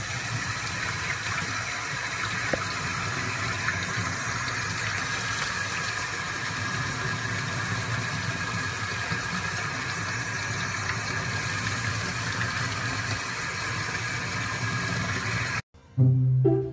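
Water running steadily from a sink faucet and splashing onto a puppy and the hands holding it. It cuts off suddenly near the end.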